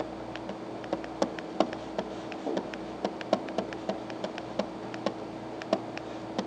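Pen stylus tapping and scratching on a tablet as an equation is handwritten: irregular sharp clicks, a few a second, over a steady low hum.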